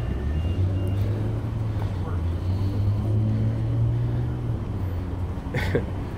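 A vehicle engine running with a steady low rumble under faint, indistinct voices; a nearer voice starts just before the end.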